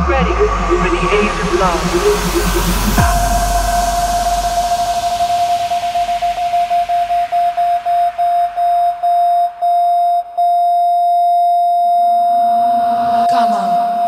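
Electronic dance track in a live deep house DJ mix, in a breakdown: the bass and beat drop out, a noise sweep rises over the first few seconds, then a single held synth tone plays, chopped into quickening stutters before it holds steady again, building back toward the drop.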